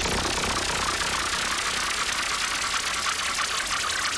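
Electronic dance music: a dense, fast-pulsing machine-like texture over a low rumble, steady throughout.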